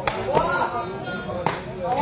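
Two sharp kicks of a sepak takraw ball, about a second and a half apart, as the ball is played back and forth, with voices going on between them.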